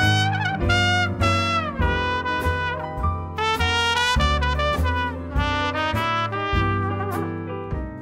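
Trumpet leading a small jazz band, with piano, bass and drums with cymbals keeping time underneath. The trumpet line has several falling smears in pitch.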